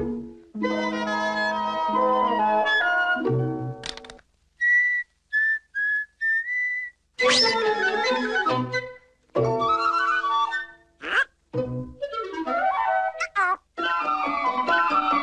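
Cartoon orchestral score with flute and woodwinds leading, played in short stop-start phrases broken by brief silences. In the middle come four short high whistle-like notes, and sliding pitches appear near the end.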